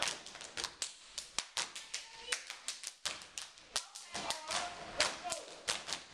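Step team clapping and slapping in unison: a fast run of sharp claps and smacks, about five a second, in an uneven, stepping rhythm.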